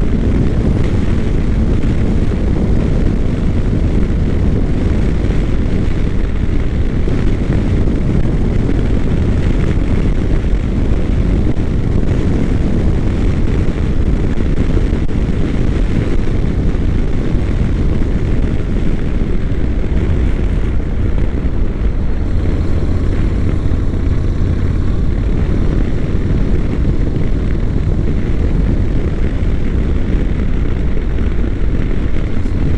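Honda NC700X motorcycle riding at a steady cruise: the parallel-twin engine's even drone mixed with rushing wind, unchanging throughout.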